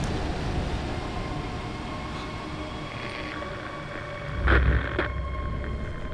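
Low, steady droning rumble of film sound design with faint held tones above it. A louder hit with a deep rumble comes in about four and a half seconds in, then fades back to the drone.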